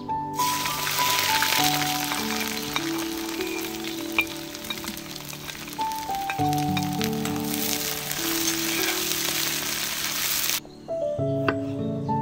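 Sliced onion sizzling as it hits a hot wok over a tandoor, starting the moment it goes in, with light clicks of a metal spatula stirring it. The sizzle cuts off suddenly about a second and a half before the end.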